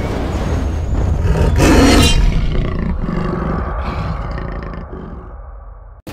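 A big cat's roar, played as a sound effect with a deep rumble, loudest about two seconds in and fading away towards the end.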